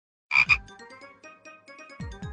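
Cartoon-style transition sound effect: two quick sharp blips with a falling low tone under them, followed by a short run of quieter ringing notes.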